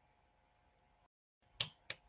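Near silence with faint room tone, then two short clicks close together near the end.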